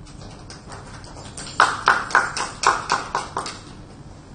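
Scattered hand clapping from a small audience: a few faint claps, then about two seconds of louder, uneven claps at roughly four or five a second that die away before the end.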